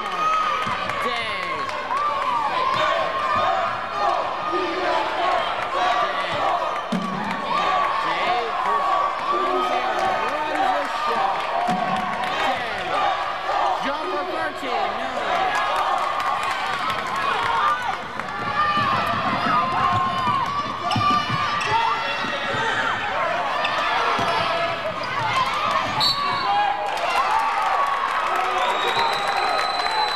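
Live indoor basketball game: the ball bouncing and players moving on the hardwood court, with spectators' voices and shouts all through.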